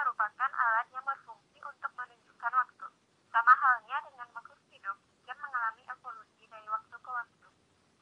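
A person's voice in short, broken phrases, thin and tinny with no low end, like speech heard over a telephone.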